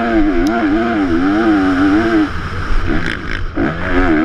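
A 450 motocross bike's engine running at high revs, its pitch wavering quickly up and down, over the rumble of wind on a helmet-mounted camera. A little past two seconds in, the engine note drops away and breaks up, then comes back strongly near the end.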